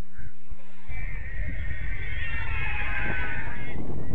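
Players and spectators shouting and cheering together, rising about a second in and holding until near the end, over low wind rumble on the microphone.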